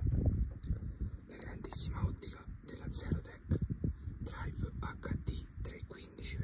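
Low, whispered speech in short broken bursts, with a low rumble underneath.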